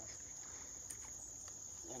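Insects singing in a steady high-pitched chorus, with a couple of faint clicks.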